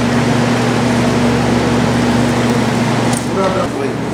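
Indistinct voices over a steady low hum. A click about three seconds in, after which the background changes.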